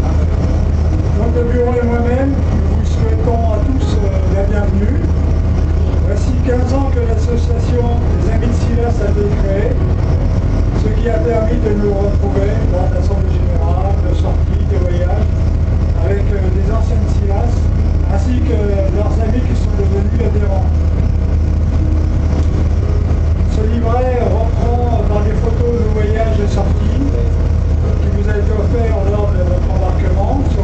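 Steady low hum of a tour boat's engine running under a man's voice speaking through a microphone and loudspeaker.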